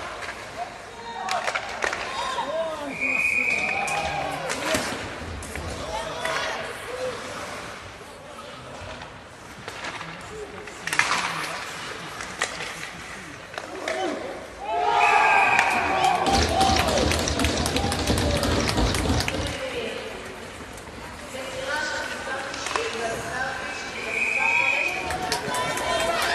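Ice hockey rink sound: players shouting, sticks and puck clacking and knocking against the boards, and a referee's whistle blowing short blasts three times, about 3 s in, about 15 s in and at the end. From about 15 to 20 s, after a goal, there is a louder stretch of shouting and banging.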